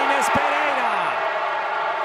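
A football commentator's drawn-out exclamation, falling in pitch, as a penalty is saved, over steady background noise, with a short thump about a third of a second in.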